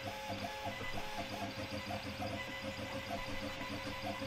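Stepper motors of an Aufero Laser 1 diode laser engraver driving the laser head along its gantry: a steady low motor hum with short higher-pitched chirps as the moves change, as the job starts.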